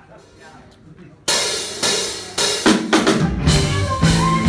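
Live rock band starting a song: after a quiet second, the drum kit comes in with loud hits, and the bass and rest of the band join heavily a second or so later.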